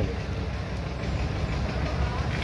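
Steady background noise with a low rumble and no distinct events.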